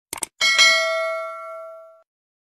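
A quick mouse-click sound effect, then a bright multi-tone bell ding that rings out and fades over about a second and a half: the stock subscribe-button and notification-bell sound effect.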